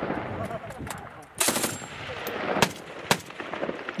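Machine-gun fire over a rushing background noise: a short burst about a second and a half in, then two single loud shots about half a second apart, with fainter shots scattered between.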